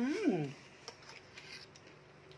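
A man's short hum, 'mm', sliding up and then down in pitch, followed by a few faint clicks of spoons on dishes.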